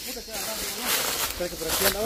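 Footsteps crunching and rustling through dry leaf litter, several steps at a walking pace, with faint voices in the second half.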